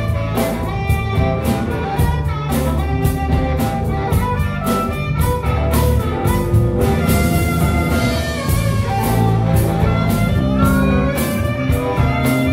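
Live blues-rock band playing an instrumental passage: a harmonica solo with bending held notes over electric guitars, bass and a steady drum beat.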